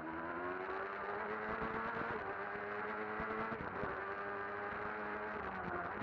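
Superstock BMW racing motorcycle's engine heard from an onboard camera at racing speed: a steady high engine note that climbs gently, with two brief breaks about two and four seconds in, under a rush of wind on the microphone.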